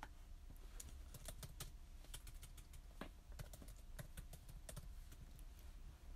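Faint typing on a computer keyboard: irregular key clicks, several a second.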